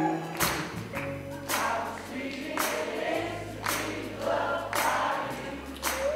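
Live soul band with a crowd of voices singing along like a choir over bass and drums, a sharp backbeat hit about once a second.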